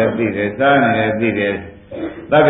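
Speech only: a Buddhist monk preaching a dhamma sermon in Burmese, with a short pause near the end.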